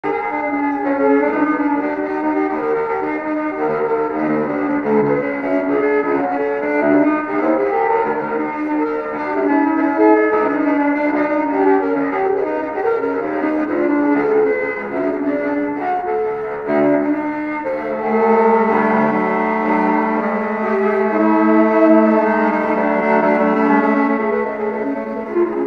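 Bowed cello music, a line of notes moving over one another; about eighteen seconds in, a low note is held steadily beneath the melody.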